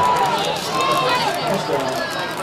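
Several excited voices shouting over one another, with drawn-out yells.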